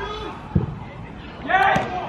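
A football kicked hard, one dull thud about half a second in, followed near the end by a short shout from a voice on the pitch.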